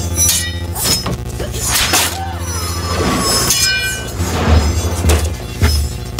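Action-film fight soundtrack: a heavy bass-driven score over sword-fight effects, with metal blades clashing and ringing several times.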